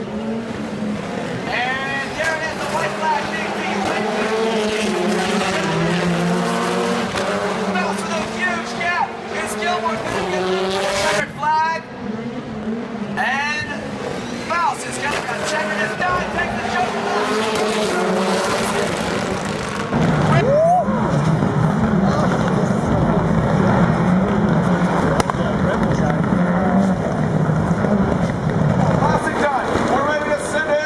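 Rallycross race cars running on the circuit, their engines repeatedly revving up and dropping back as they accelerate and brake through the corners. About two-thirds of the way in, the sound abruptly becomes louder and more even.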